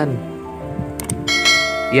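A mouse-click sound effect, then a bright bell chime ringing for about a second: the sound effect of a 'subscribe and ring the bell' button animation, over soft background music.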